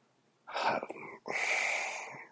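A man breathing heavily through his nose or mouth: a short breath about half a second in, then a longer, drawn-out breath lasting about a second, like a heavy sigh.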